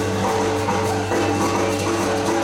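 Live band playing a song, with held instrument notes over a steady, evenly ticking percussive rhythm.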